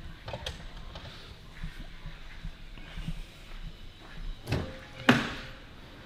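Light knocks and clicks from handling the car's boot and rear-seat fittings. Then two solid thumps about four and a half and five seconds in, the second the louder, as a panel or latch is shut.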